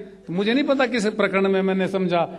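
A man speaking in Hindi into a microphone.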